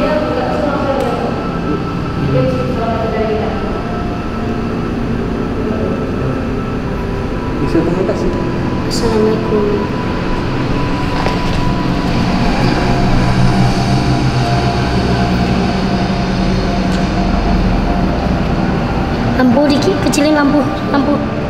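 A steady, loud droning hum made of several held tones over a low rumble, growing a little louder past the middle, with brief murmured voices now and then.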